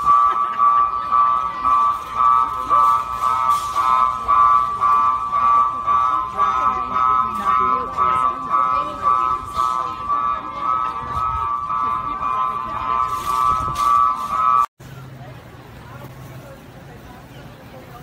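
An electronic alarm sounding one steady high tone that pulses quickly in loudness, cut off suddenly about 15 seconds in.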